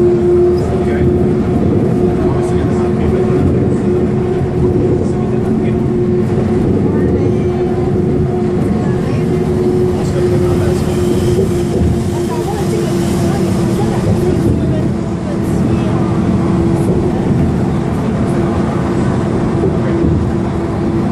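Cabin noise inside an articulated Van Hool city bus under way: steady engine and road rumble with a steady droning tone through it.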